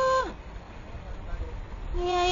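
A woman's cry ends with a falling pitch at the very start, then a city bus's diesel engine idles as a steady low rumble.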